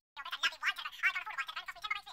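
A muffled, garbled voice answering, its words unintelligible: a thin, fast chatter of syllables with no low end.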